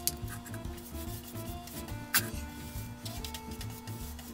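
Background music with a steady beat over a rubbing scrape of a stick stirring latex paint in a plastic paint jug. There is one sharp knock about two seconds in.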